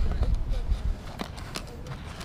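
Wind buffeting the microphone, a fluctuating low rumble that fades over the two seconds. A few faint light clicks come from metal jewelry chains being handled.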